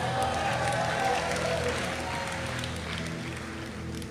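Congregation applauding and cheering, easing off near the end, over soft steady background music.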